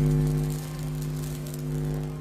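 A steady low electrical hum with a faint crackle of static over it: a sound effect for static electricity building up.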